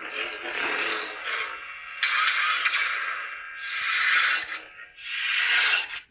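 Lightsaber sound-font effects played by a Proffieboard sound board through the hilt's small bass speaker: four swelling, fading surges of sound.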